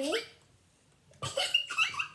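A young child's voice making short, high-pitched silly vocal noises about a second in, after a brief pause.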